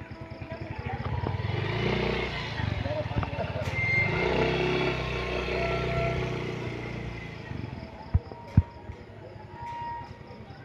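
A motor vehicle engine passing by on the street, swelling up to a peak and fading away over several seconds, followed by two sharp knocks near the end.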